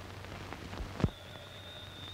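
Crackle and low hum of an old film soundtrack, with one sharp pop about a second in, followed by a faint, steady, high-pitched tone.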